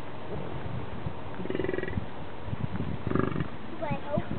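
American bison grunting twice, two short, throaty, pulsing grunts about a second and a half apart.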